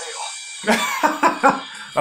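A man laughing in about four short, quick bursts, starting just under a second in.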